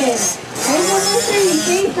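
A person talking near the microphone; the words are not made out.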